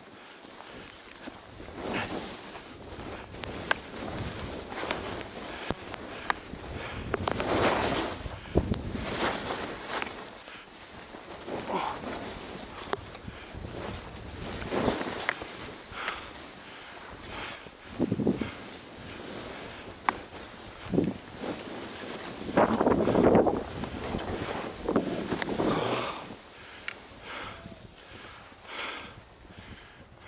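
Skis hissing through soft powder snow in a run of turns, the hiss swelling with each turn at irregular intervals, with wind buffeting the microphone.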